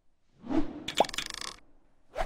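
Cartoon animation sound effects: a short whoosh about half a second in, then a sharp pop with a quick upward pitch blip about a second in, trailing off in a brief rattle.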